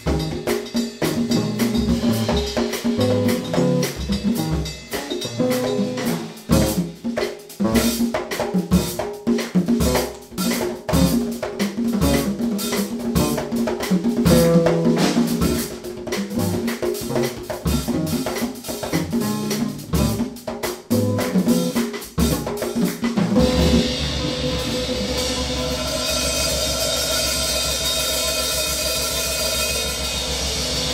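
Live jazz trio of drum kit, electric bass and kpanlogo hand drums, with a busy drum passage of sharp hits over bass notes. About 23 seconds in the drumming stops and gives way to a steady, held, ringing ending with sustained tones and a rising wash of high sound.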